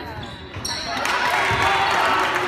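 Basketball dribbled on a hardwood gym court amid players' and spectators' voices, the noise swelling about a second in.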